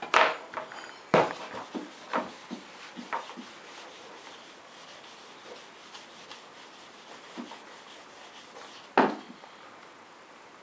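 A whiteboard eraser rubbing over the glossy page of a wipe-clean activity book, wiping off marker lines in a soft steady scrape. Sharp knocks come about once a second over the first three seconds, with a loud one near the end.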